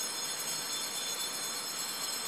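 Altar bells ringing at the elevation of the consecrated host during Mass: a steady cluster of high ringing tones.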